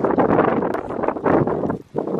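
Wind buffeting the microphone, a loud rough rushing that drops away sharply near the end.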